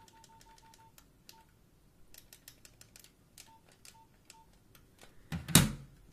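Nokia 3310 keypad beeping: short single-pitch key beeps, a quick run at the start, then a few scattered ones, each with a faint button click. A loud thump near the end as the phone is set down on the table.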